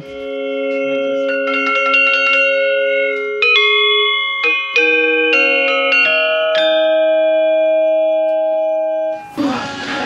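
Balinese gendér, a gamelan metallophone with bronze keys over bamboo resonators, played with two mallets: struck notes that ring on and overlap. A quick run of strikes in the first three seconds gives way to fewer strikes and long ringing notes, which stop about nine seconds in.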